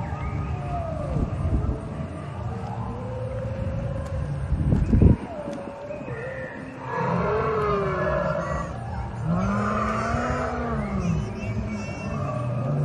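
Recorded dinosaur roars and growls from the park's animatronic dinosaurs, drawn out and wavering in pitch, with the loudest, slow rising-and-falling growl in the second half, over the voices of visitors. About halfway through a brief loud low rumble cuts off suddenly.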